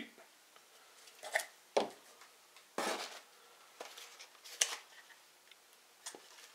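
Handling noises from unpacking: a few short, separate knocks and rustles as metal aerosol cans are set down on a table and a cardboard box lined with packing paper is rummaged through.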